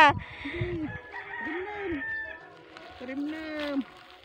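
A rooster crowing: three drawn-out calls that rise and then fall, the longest near the end.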